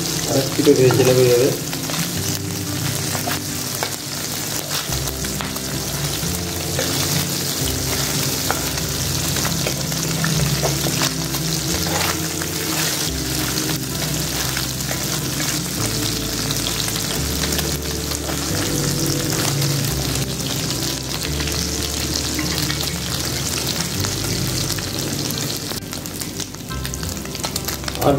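Small mola carplet (mourola fish) shallow-frying in hot mustard oil in a wok, a steady sizzle with fine crackling, as a spatula stirs and turns them. They are being fried to a light brown.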